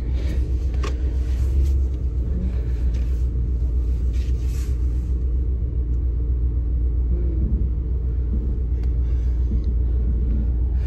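A truck's engine and drivetrain running, heard from inside the cab as a steady low rumble, with a few faint clicks and rustles in the first half.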